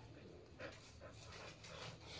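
Indian desi dog panting faintly, a few soft breaths.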